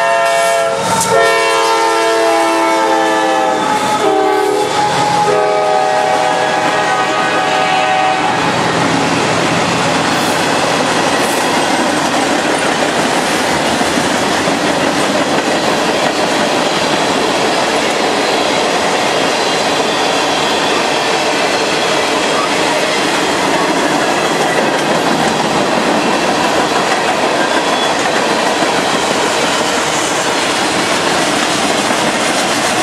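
CSX freight train passing: the lead diesel locomotive's air horn sounds a chord in a few blasts, with short breaks, and stops about eight seconds in. After that comes the steady noise of steel wheels on rail as tank cars and boxcars roll by.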